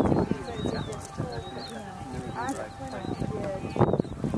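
A bird chirping over and over, short high calls about twice a second, over indistinct voices of people talking.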